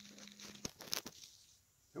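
Faint rustling of a cotton rag and a few light clicks as wooden coasters are handled and wiped, fading to near silence by the end.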